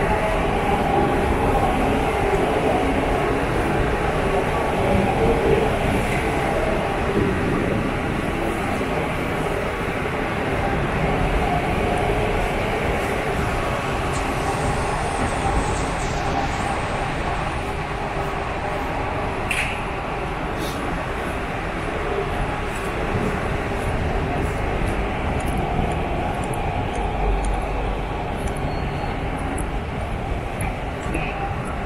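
Steady city-street background noise: a continuous low rumble of traffic and town hum with no single sound standing out.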